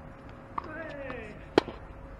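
A tennis ball struck hard with a racket: one sharp pop, the loudest sound, a little past the middle. Before it come a softer knock and a short call from a person's voice that falls in pitch.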